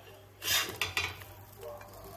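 Steel spatula scraping and clanking against a flat griddle pan (tava) as food is lifted off it, with two loud clatters about half a second and a second in.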